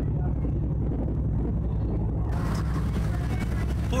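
Ferry's engines droning steadily, heard from the open deck. About two seconds in, a hiss of wind and churning wake water joins in.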